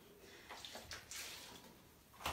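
Faint trickle and splash of white spirit poured from a plastic bottle onto a cloth, in two short bursts about half a second and just over a second in.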